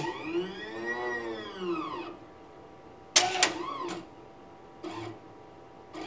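TANGO infinity analyzer's plate carriage motor drawing a microplate into the instrument: a whine that rises and then falls in pitch over about two seconds. About three seconds in comes a sharp clack with a shorter whine after it, and a faint click near the end.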